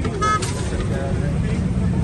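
Steady low mechanical rumble, with a brief voice about a quarter second in.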